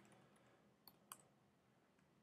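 Near silence, broken by a few faint, short clicks from working the computer. Two of them come close together about a second in.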